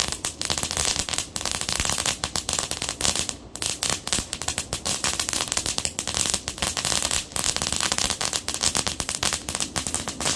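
Ground fountain firework spraying sparks with a dense, rapid crackle of sharp pops, easing briefly about three and a half seconds in.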